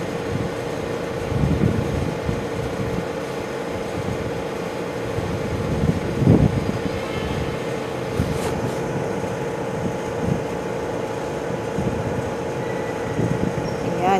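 Steady background hum and rumble with a few low thuds, one about a second and a half in and a louder one about six seconds in.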